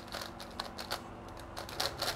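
GAN Skewb M Enhanced, a magnetic skewb puzzle, being turned rapidly by hand: a quick, irregular run of light plastic clicks as the pieces snap round. It turns smooth and fast, coming well lubricated from the factory.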